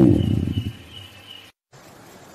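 A man's voice drawing out the last syllable of a word, trailing off within the first half second, then faint room tone broken by a brief gap of dead silence about one and a half seconds in.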